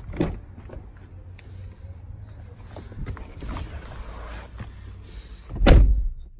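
Driver's door of a 2019 Chevrolet Equinox unlatching with a click at the start, faint shuffling as someone climbs into the seat, then the door shutting with a heavy thud near the end.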